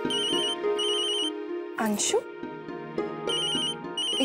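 Telephone ringing, heard while a call is being placed and not yet answered: two short trilling rings at the start, a pause, then two more near the end. The rings sit over sustained background music, with a whooshing sound effect about two seconds in.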